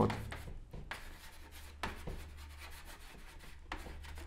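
Chalk writing on a blackboard: a run of short, scratchy strokes as words are written out by hand, over a faint steady low hum.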